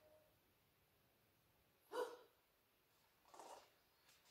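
Near silence in a small room, broken by one short, sharp sound about two seconds in and a brief rustle about a second later.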